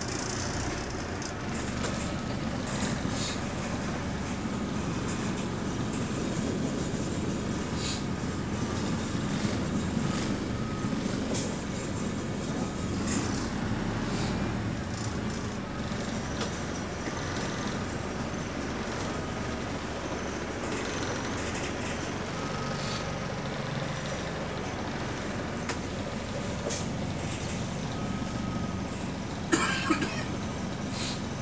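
Steady engine and road noise of a moving single-deck bus heard from inside the passenger cabin, with a few short sharp clicks and rattles and a louder knock near the end.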